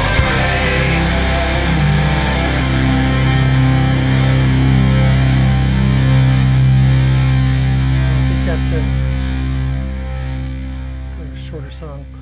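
Closing of a guitar-heavy rock song: distorted electric guitar and low bass notes held and ringing out, swelling and then fading away over the last few seconds.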